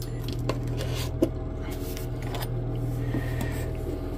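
A few small clicks and taps as a cardboard salt canister is picked up and tipped over a spoon, over a steady low hum.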